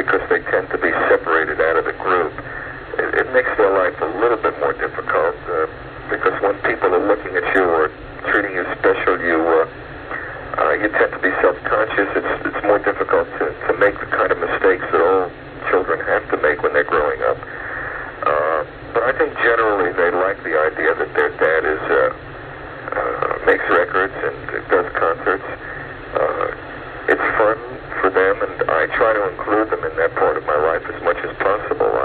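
Speech only: a man talking over a telephone line on a radio broadcast, continuous with short pauses.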